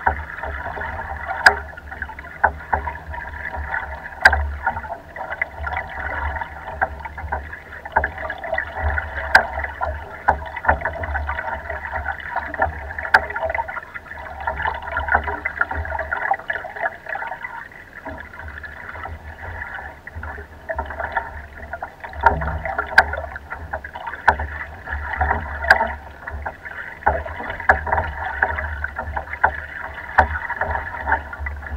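Choppy lake water lapping and splashing against the side of a wooden rowboat under way, with a low rumble that drops away for a few seconds midway and scattered sharp ticks.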